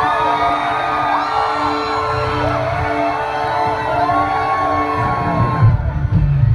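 A live rock band's keyboard playing a pulsing synth intro, a repeated two-note pattern, while the crowd whoops and cheers. About five seconds in, drums and bass come in heavily as the full band starts.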